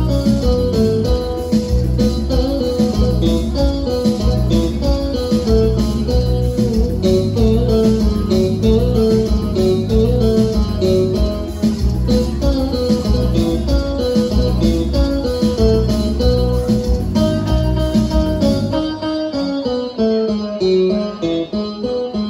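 Live dance band playing an upbeat song: a plucked guitar melody over bass and a steady beat. About nineteen seconds in, the bass and drums drop away and the music thins out as the song winds down.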